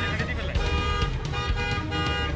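Road traffic with car horns sounding in long steady tones over a low traffic rumble, and people talking.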